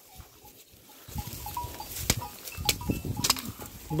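Flock of sheep grazing and moving through dry grass and brush: rustling and crunching that starts about a second in, with a few sharp snaps in the second half.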